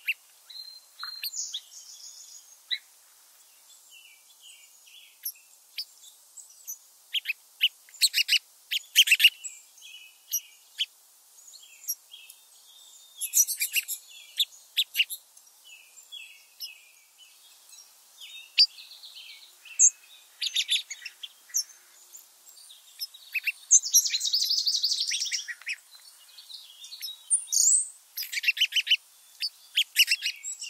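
Small songbirds chirping and calling, with rapid trills breaking in several times; the longest and loudest trill comes about two-thirds of the way through.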